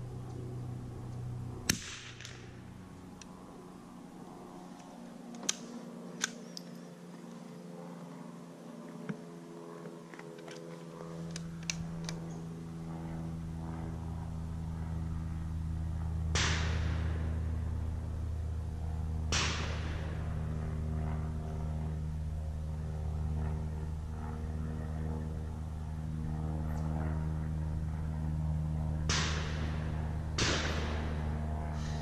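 Single shots from a .22 Long Rifle Anschutz target rifle fired slow-fire from prone, four in all, several seconds apart, each a sharp crack with a short echoing tail. Lighter clicks come between the shots.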